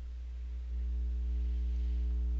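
Steady low electrical hum with a few faint higher overtones, stepping up louder about two-thirds of a second in.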